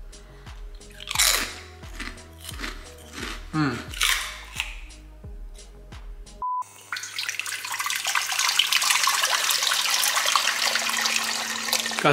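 Background music with a beat and falling bass sweeps. About six seconds in there is a brief beep, and then water from a kitchen tap runs steadily, growing slightly louder.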